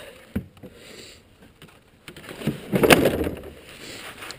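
Plastic snowmobile hood being handled and lowered shut: a light knock about half a second in, then a rustling scrape ending in a clunk about three seconds in.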